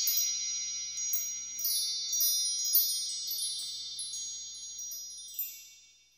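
Chime sound effect: high, bright ringing tones struck several times, overlapping one another and fading out near the end.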